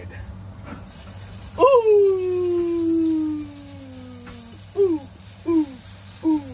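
A man's voice singing one long note that slides slowly downward, then a run of short falling notes about every two-thirds of a second. A faint steady sizzle comes from potatoes frying in a skillet underneath.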